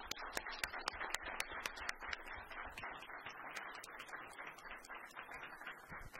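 Audience applauding, the claps sharpest in the first couple of seconds.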